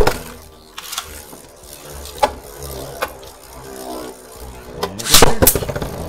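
Beyblade Burst spinning tops just launched into a plastic stadium, the launch rip dying away at the start, then the tops spinning with a steady hum. Sharp clicks of the tops striking each other or the stadium wall come about a second in, at two and three seconds, then a louder flurry of hits about five seconds in.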